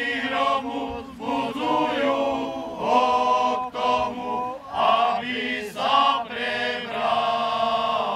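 A male folk choir singing together, voices holding long notes with brief breaths between phrases.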